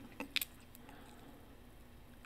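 Two short, faint clicks in the first half second, then near silence: room tone.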